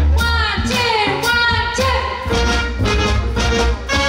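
Music with singing over a strong bass, the lead sliding down in pitch several times.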